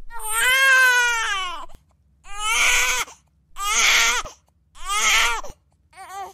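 A cartoon character crying: four loud wails, the first long at about a second and a half, then three shorter ones in quick succession.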